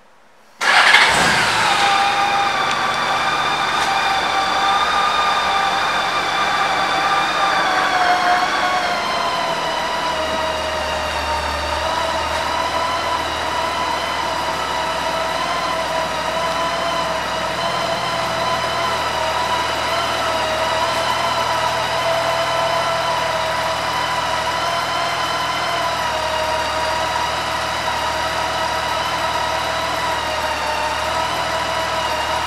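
2006 Honda Gold Wing's 1.8-litre flat-six engine started on the electric starter, catching at once. It runs at a slightly raised idle at first, then drops to a lower, steady idle about nine seconds in.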